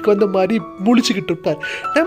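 Voiceover narration over background music, with a few steady held tones under the voice.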